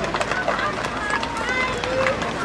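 Children's voices talking and calling out over each other, with a few scattered handclaps.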